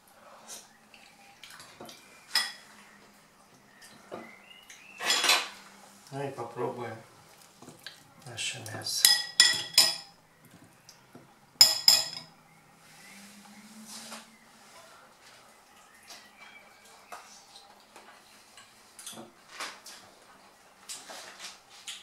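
A metal spoon clinking and scraping in a ceramic pot of stew: scattered sharp clinks, the loudest at about five, ten and twelve seconds in.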